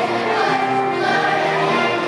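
Children's choir singing a song in held, sustained notes.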